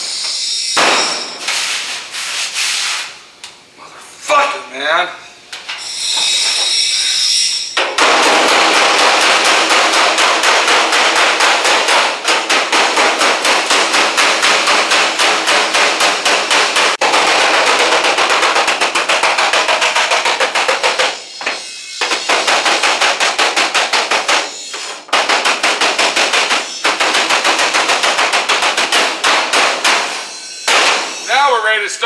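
A power tool running with a very rapid hammering rattle in long runs broken by a few short pauses, after several seconds of scattered knocks and clatter.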